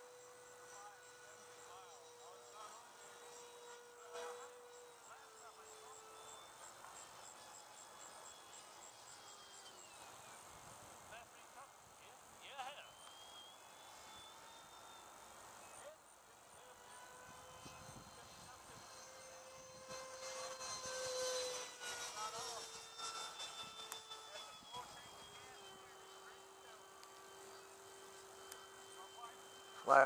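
80 mm electric ducted fan of a radio-controlled L-39 jet model whining steadily in flight, heard from on board the model. Its pitch steps down about five seconds in, rises and gets louder around twenty seconds in with the throttle, then settles at a lower pitch near the end.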